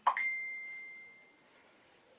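A single electronic ding: one tone that starts sharply and fades away over about a second and a half. It is one of the alert beeps that keep going off in the room.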